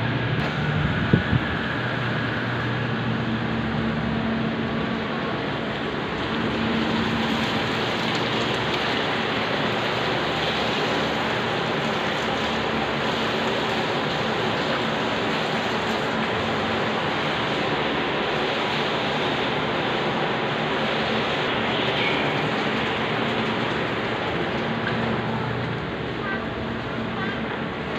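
Steady rushing noise with a faint low hum under it, and a couple of short knocks about a second in.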